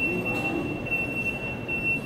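A steady, high-pitched whine holds one pitch throughout, over a low background hum and faint murmuring voices.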